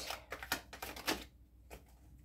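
A deck of paper cards being shuffled by hand: a quick run of soft card clicks and slaps that thins out after about a second.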